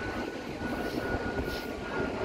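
Wind buffeting the microphone over the steady wash of ocean surf, with a thin steady high tone through it and a few faint gliding calls near the end.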